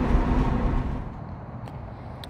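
Honda Civic EK hatchback heard from inside the cabin while driving: a steady low engine and road drone. It cuts off abruptly about a second in, leaving a quieter background with a couple of faint clicks.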